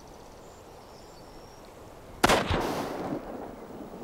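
A single rifle shot about two seconds in, loud and sharp, its report echoing and dying away over about a second.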